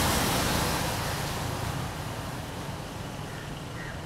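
Outdoor noise of a passing motor vehicle, loudest at the start and fading steadily as it moves away.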